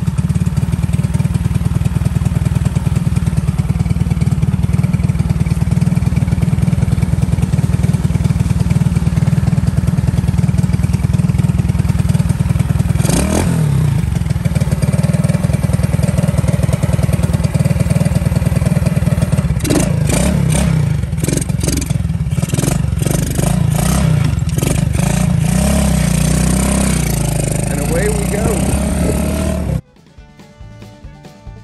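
Lifan 125cc single-cylinder four-stroke engine in a Honda SL70 minibike idling steadily as it warms up after its first start of the day. A few sharp clicks and knocks come around the bike about halfway through, and the engine note changes near the end as the bike pulls away.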